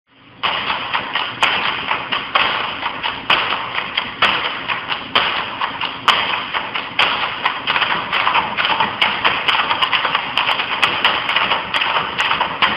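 Percussive intro track: a fast, dense tapping clatter with a heavier accent about once a second, starting suddenly just after the opening.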